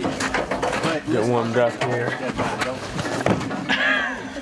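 Men's voices talking indistinctly, with a few sharp knocks in between.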